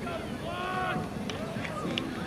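Several players' voices talking over one another on an open field. A couple of short sharp hand slaps fall in the second half.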